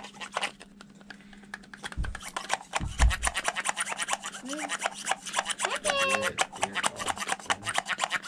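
Rapid rasping, scraping strokes of something being rubbed by hand, with two low thumps about two and three seconds in and a short high squeak about six seconds in.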